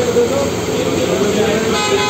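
Busy street noise with background voices; about three-quarters of the way through, a vehicle horn starts sounding one steady, held note.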